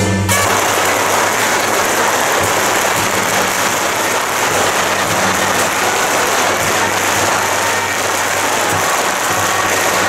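A dense, steady crackling noise with no tune in it. It cuts in abruptly just after the start and covers the music for about ten seconds before stopping.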